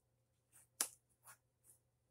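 A few short clicks and rubbery rustles of fingers handling an uninflated heart balloon, the sharpest a little under a second in, the others faint.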